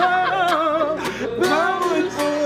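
A man singing with a wavering vibrato, accompanied by a strummed acoustic guitar.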